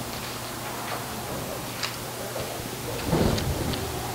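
Sheets of paper handled and shuffled at a lectern, picked up by a clip-on microphone over a steady electrical hum and hiss, with a few light ticks and a louder rustle about three seconds in.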